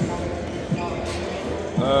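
A basketball bouncing on a hardwood gym floor in the background, a few separate dull thuds, with faint voices in a large hall. A man's hesitant "um" starts near the end.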